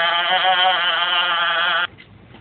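A person's voice holding one long, slightly wavering vocal note for nearly two seconds, which cuts off abruptly near the end.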